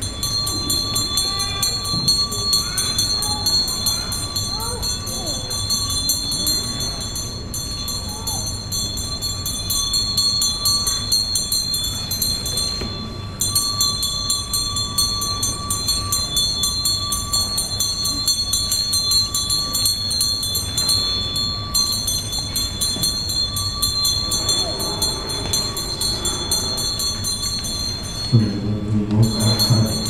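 A hand bell rung continuously, a steady high metallic ringing that breaks off briefly twice, under the quiet voices of onlookers. Near the end a low man's voice comes in loudly.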